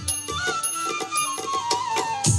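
Bamboo flute playing a melody that steps downward in pitch, over drum beats: an instrumental interlude of a Bengali baul folk song.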